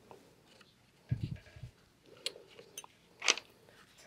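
Hands handling a paper sketchbook on an easel: a few soft low bumps, faint clicks, and one short sharp paper rustle about three seconds in as a page is turned.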